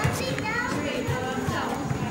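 Indistinct chatter of spectators' voices, children's among them, with a few short thuds of feet on the mats.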